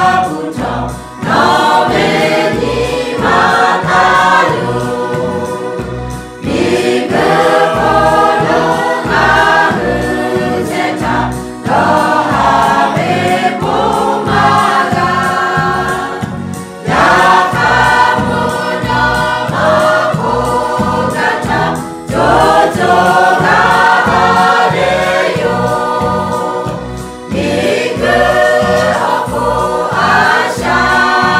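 A mixed choir of women and men singing together, in phrases of about five seconds, each ending in a brief dip before the next.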